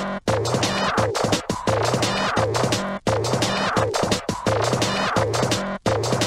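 Hardtek / free tekno dance music from a DJ mix: a dense, repeating electronic beat under a warbling synth line. The sound cuts out briefly three times, about every three seconds.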